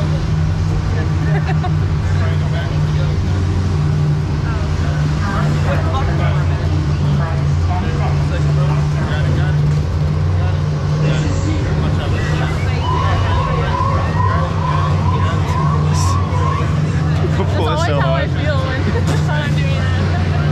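Steady low hum of a Dinosaur ride vehicle running, with indistinct voices over it. A run of about ten short rising chirps, about three a second, sounds a little past halfway through.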